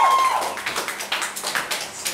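The last held tone of a live industrial-music piece cuts off just after the start, followed by sparse, scattered hand claps from a small club audience.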